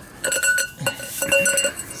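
Steel tools clinking: a jack handle knocked against a ratchet handle as it is slid over it for leverage. There are several light metal knocks, some of them ringing briefly.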